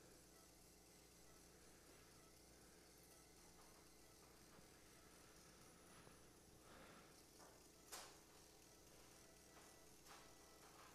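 Near silence: a faint steady background hum, with one short click about eight seconds in.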